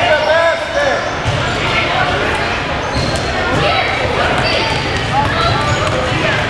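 Basketball being dribbled on a gym floor, mixed with indistinct voices of players and spectators echoing in a large hall.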